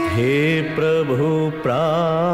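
Hindi devotional bhajan music: a male voice sings long, held notes in a chant-like melody with a slight waver, pausing briefly about a second and a half in.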